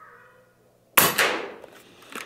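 A single shot from an Air Venturi Avenge-X .25-calibre pre-charged pneumatic air rifle about a second in: a sharp crack that fades over most of a second.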